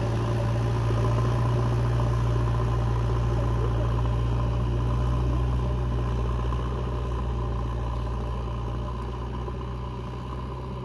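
JCB backhoe loader's diesel engine running steadily, growing fainter over the last few seconds.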